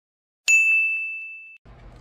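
A single bright bell-like ding, a sound effect, strikes about half a second in. It rings on one high note for about a second before cutting off.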